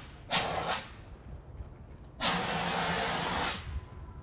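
Hand-held fire extinguisher discharging in two bursts of hiss: a short one near the start and a longer one of about a second and a half in the middle, sprayed onto a burnt duvet to put out the fire.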